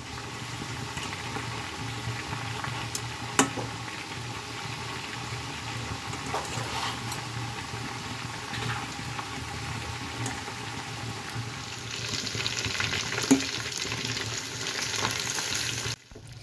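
Chicken pieces deep-frying in hot mustard oil in a steel kadhai, nearly done: a steady sizzle and bubbling of the oil. A metal utensil knocks sharply against the pan about three seconds in and again near the end, and the sizzle grows brighter from about twelve seconds in.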